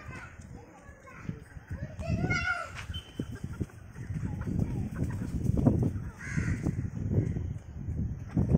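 Chickens clucking as they forage, with a short pitched call about two seconds in, over a low murmur of people's voices.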